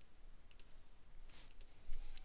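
A few faint computer mouse clicks about half a second in, then a soft breathy hiss.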